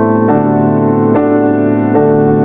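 Yamaha MX88 synthesizer keyboard playing held chords, the chord changing about once a second.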